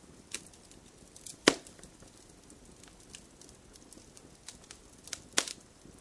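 Quiet room tone broken by a few scattered sharp clicks and crackles. The loudest comes about a second and a half in and another near the end.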